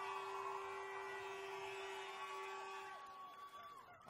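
Several steady tones at different pitches sounding together, held for nearly four seconds and fading out near the end.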